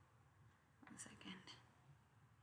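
Near silence in a small room, with a brief, faint muttered word from a man about a second in.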